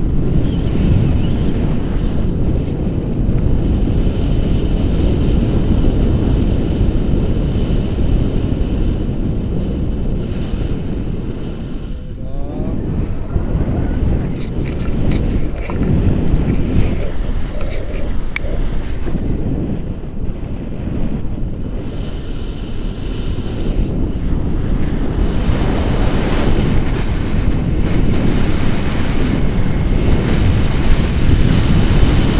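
Airflow of a tandem paraglider's flight buffeting the camera microphone: a loud, steady rumble that surges and eases, briefly dropping about twelve seconds in and again around twenty seconds.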